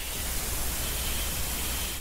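Steady static hiss of line noise, with a constant low hum underneath and no voices.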